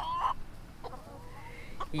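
Backyard hens clucking quietly: a short call right at the start, then a few faint clucks.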